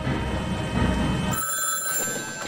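A low rumble, then a telephone starts ringing about one and a half seconds in, with a high, steady ring.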